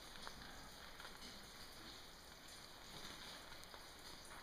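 Near silence: a steady faint hiss with a few faint, isolated ticks.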